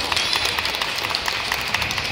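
Scattered audience applause in a large sports hall, a dense patter of hand claps.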